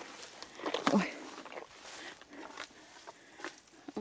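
Handling and rustling noises with scattered light clicks, and a short voice sound about a second in.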